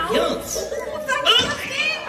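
Young children in an audience calling out and chattering, several high voices overlapping.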